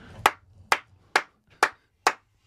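One person clapping, four sharp hand claps about half a second apart.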